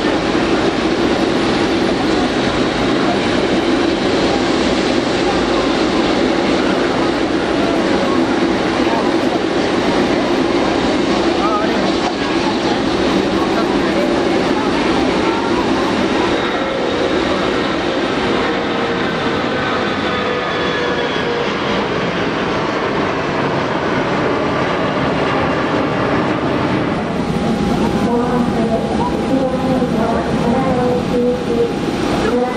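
Four GEnx-2B67 turbofans of a Boeing 747-8F running at taxi power, a loud, steady rushing whine. In the second half some of the engine tones slowly fall in pitch as the jet moves past and turns.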